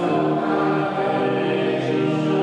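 Congregation singing a hymn together, many voices holding long notes that move to new pitches every second or so.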